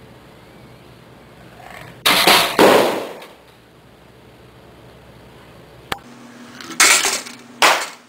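A balloon bursting as wedges on a lever press into it: a sudden loud pop about two seconds in, with about a second of noisy rattle after it. Two more short loud bursts follow near the end.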